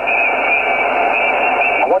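Yaesu FT-857D's speaker hissing with band noise on 10-metre upper sideband between transmissions, the sound cut off sharply above and below the way radio audio is, with a wavering high whistle along the top of the hiss.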